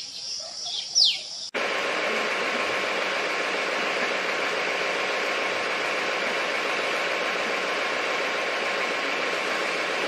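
A single high call sweeping downward in pitch, from an Indian grey hornbill, about a second in. After a sudden cut at about a second and a half, a steady, even hiss holds through the rest.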